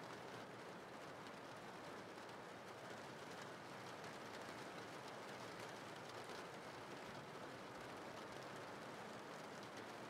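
Faint, steady rain, an even hiss with nothing standing out.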